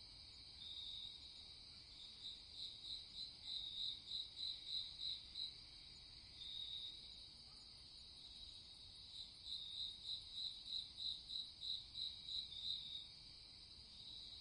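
Faint crickets chirping: a steady high trill, with two runs of louder pulsed chirps at about three a second, one starting a couple of seconds in and one about nine seconds in.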